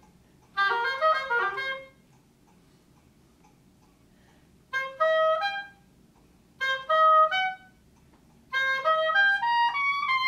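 Oboe playing four short phrases of quick notes, separated by pauses of a second or more.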